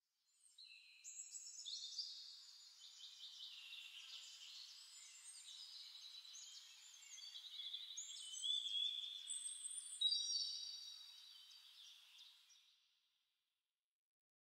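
Faint birdsong: several birds' high chirps and trills overlapping, fading in over the first second and fading out near the end.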